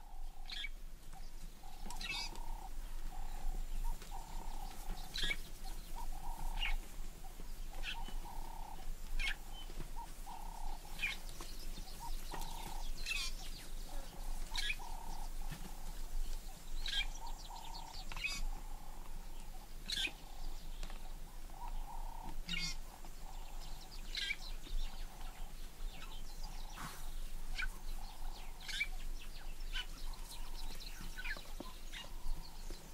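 Wild birds chirping in short, high calls, repeated many times, over a mid-pitched call that pulses on and off and a steady low hum.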